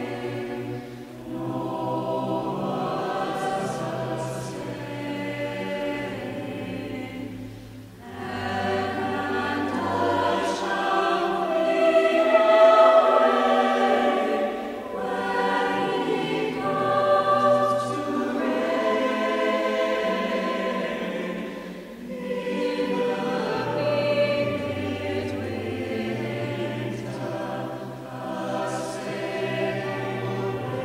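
Mixed choir singing in long sustained phrases, with short breaks between phrases.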